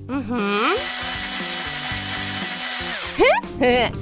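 Cordless drill running steadily for about two and a half seconds, driving screws into a wooden roof frame, over background music.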